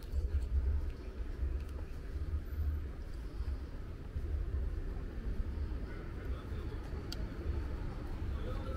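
Outdoor street ambience: a steady, uneven low rumble with faint distant voices and a small click about seven seconds in.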